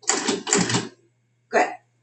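Countertop food processor pulsed twice in short bursts, its blade spinning through dry flour to aerate it.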